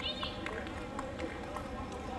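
Stadium ambience: a murmur of distant voices with scattered short taps, and a brief high call at the start.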